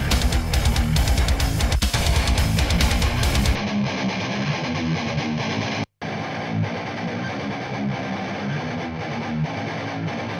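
Distorted heavy-metal electric guitar riff picked up by a microphone at the right-hand edge of the cabinet's speaker, first with drums and bass, then from about three and a half seconds in on its own without the deep low end or top end. It cuts out for an instant near six seconds and starts again. The tone of this mic position is super dark.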